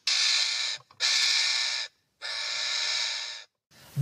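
Three long, harsh hisses of about a second each from a bird at a parrot nest box while a dark predatory bird grips the entrance; a threat or defence sound at the nest.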